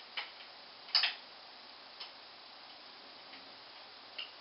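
A few light clicks from a camera tripod as its raised centre column is locked in place and the tripod is handled. The loudest click comes about a second in.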